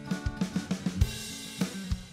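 GarageBand Drummer track playing back a rock drum pattern of kick, snare and hi-hat, with a cymbal crash about a second in, over a strummed guitar track.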